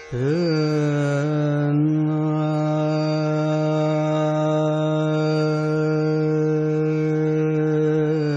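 Male Hindustani classical vocalist singing raga Bhimpalasi: the voice enters with a quick upward slide, wavers briefly, then holds one long steady note. A tanpura drone sounds beneath it.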